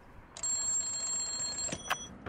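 A high bell ringing continuously for over a second, starting about half a second in, then a sharp click and a brief shorter ring near the end.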